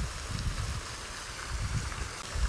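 Outdoor background noise: a faint steady hiss over an uneven low rumble.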